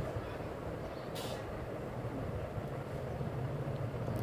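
Steady low background rumble, with a short hiss about a second in and a low hum that grows stronger near the end.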